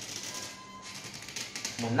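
Green plastic screw lid on a glass jar of honey being twisted by hand, its threads giving a run of quick clicks that are densest near the end. The lid is very tight because the wild honey inside builds up gas.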